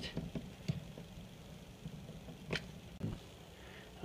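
A few faint, sharp metallic clicks and a soft knock from pliers gripping and twisting a faucet's brass valve stem to work it loose, over quiet room tone.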